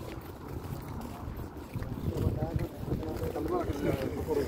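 Wind buffeting the microphone, with people talking faintly in the background, a voice becoming clearer near the end.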